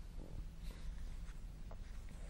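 Faint outdoor background noise: a steady low rumble with a few faint, short clicks.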